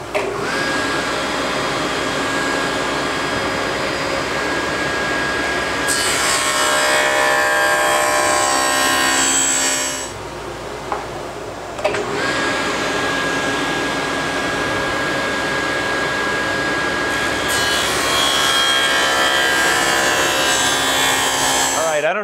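SawStop table saw with a dado stack running and plowing a groove along a hardwood board. A steady whine gives way twice to a louder, harsher cutting noise, with a short quieter lull between the two passes.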